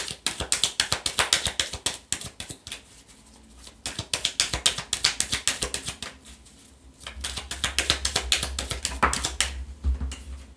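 A deck of oracle cards being shuffled by hand: rapid runs of light card-on-card clicking in three spells, with short pauses between them.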